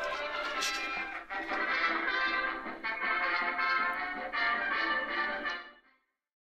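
Music playing through tiny laptop speakers glued by their membranes to a cardboard box lid, so that the lid is the sounding board: thin, with almost no bass. It fades out near the end.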